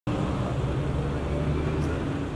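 Steady background ambience: a low rumble with a faint murmur of voices.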